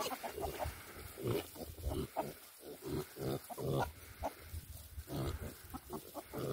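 Young kunekune pigs grunting in a string of short, low grunts as they forage.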